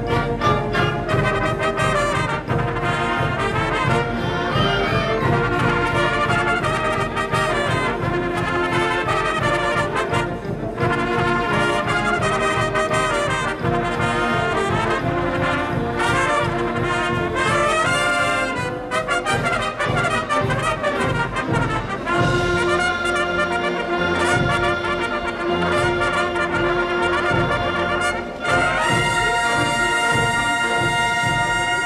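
Symphonic concert band playing brass-led music, with a front row of trumpets carrying the line over the full band and a steady pulse underneath. For the last third the music settles into long held chords, with a brighter chord entering near the end.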